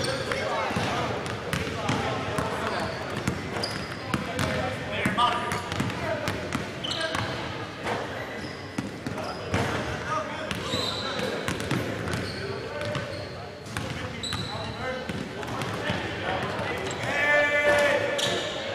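Basketballs bouncing on a gym's wooden court, the thuds echoing in the large hall, with indistinct voices.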